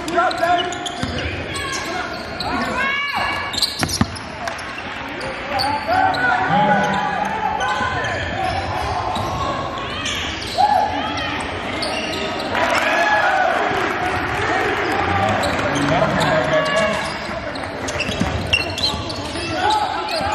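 Basketball game in a gym: the ball bouncing on the hardwood court with several sharp knocks, amid voices calling out, all echoing in the large hall.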